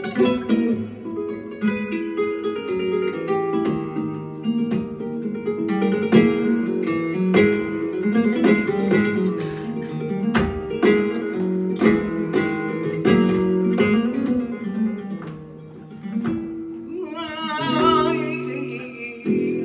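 Flamenco guitar playing soleá: plucked runs broken by sharp strummed chords. About a second before the end a man's voice comes in singing with a wavering, ornamented line.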